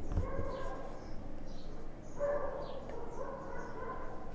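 Marker pen squeaking faintly on a whiteboard while handwriting, a thin held squeal broken into several short strokes, with light scratches between them.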